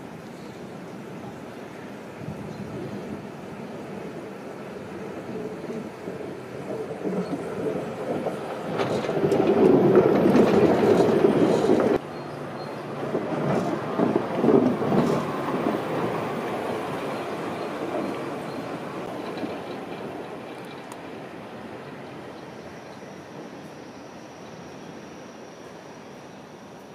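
Funicular car's wheels rolling along the rails as it passes close by, getting louder as it nears and then fading slowly as it moves off, with a sudden break about halfway through.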